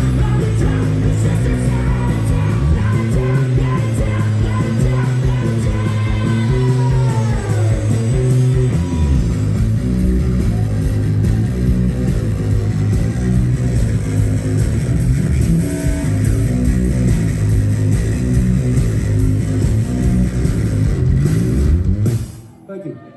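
A live rock band plays a loud instrumental section on electric guitars, bass guitar and drums. Near the end the music breaks off suddenly as the song finishes.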